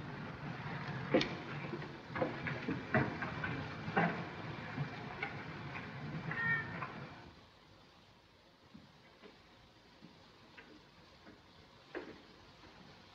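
Footsteps on stone as two men walk, heard as irregular knocks over the steady hiss of an old optical film soundtrack, with a short high-pitched cry about six and a half seconds in. After about seven seconds the sound drops away to faint ticks and hiss.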